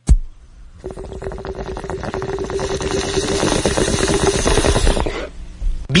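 A bong rip played as a radio sound drop: a sharp click, then about four seconds of water bubbling hard through a bong as smoke is drawn, growing louder before it stops abruptly.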